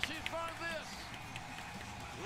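Speech: a voice talking briefly in the first second, then only a steady low background.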